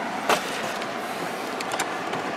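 Steady car cabin noise, with one short rustle or tap about a third of a second in and a few faint ticks near the end.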